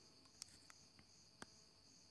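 Near silence with faint, steady high-pitched chirring like crickets, and two faint clicks about half a second and a second and a half in.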